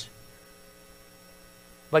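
A pause in a man's speech filled only by a faint, steady electrical hum and room tone; his voice comes back right at the end.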